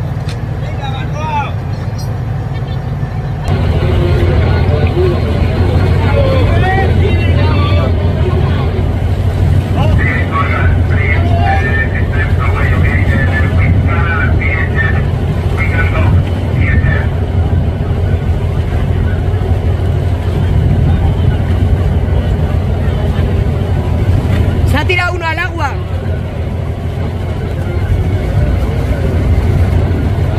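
Boat engine running with a steady low drone, which gets louder about three and a half seconds in. People's voices call out over it, most in the middle and briefly again near the end.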